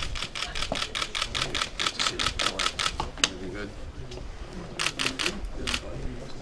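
Press photographers' camera shutters firing in rapid bursts, several clicks a second for about three seconds, then a few more bursts near the end.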